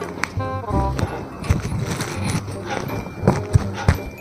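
Background music with a run of irregular sharp clicks and knocks.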